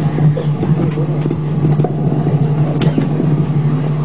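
A loud, steady low hum with scattered small clicks and knocks over it; no guitar notes are played yet.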